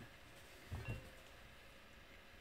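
Quiet room tone, with one faint short low thump a little under a second in.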